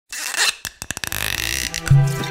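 Intro sound effect: a burst of hiss, then a rapid stuttering run of clicks and a steadier hiss, with a low musical tone coming in near the end.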